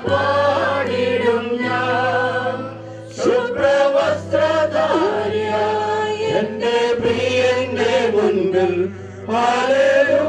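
A group of voices singing a slow hymn, with a steady low tone held underneath. The singing dips briefly about three seconds in and again near the end.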